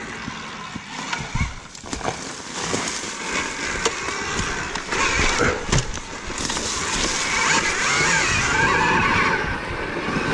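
2023 KTM Freeride E-XC electric dirt bike ridden along a wooded dirt trail. There is no engine, only tyres rolling over leaf litter and dirt, chain and chassis rattle, and knocks over bumps. A high whine from the electric motor comes and goes.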